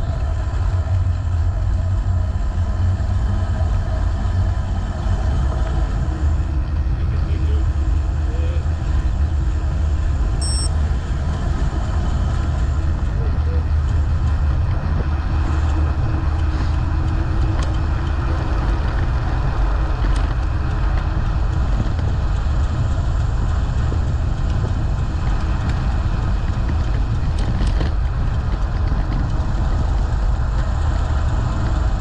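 Steady low rumble of wind and travel noise on the microphone of an action camera moving along a road.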